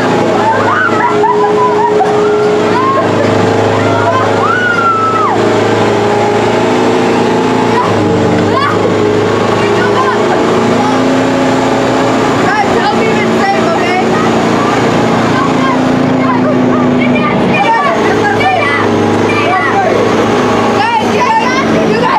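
Tank engine running loudly and steadily, its pitch shifting a few times, with children's voices calling out over it.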